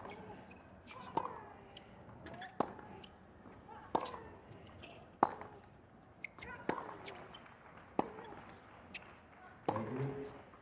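Tennis ball struck back and forth by rackets in a baseline rally: about seven sharp hits spaced roughly 1.3 s apart. Short vocal grunts follow some of the strokes.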